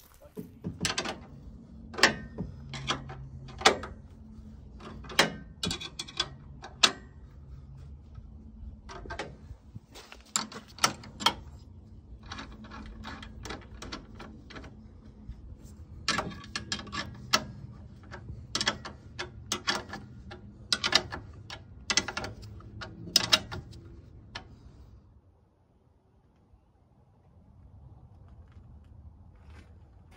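Sharp metal clicks and clinks of a spanner working the bolts that fix an outdoor air-conditioner unit to its steel mounting bracket, in irregular runs of several clicks, stopping about 24 seconds in.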